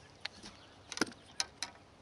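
A few short, sharp clicks and knocks, the loudest about a second in, as fishing gear is handled on the floor of a fishing boat.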